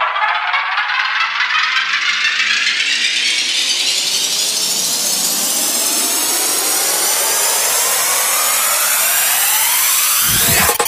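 Psytrance build-up with the kick and bass dropped out: a many-layered, noisy synth riser sweeps steadily upward in pitch for about ten seconds.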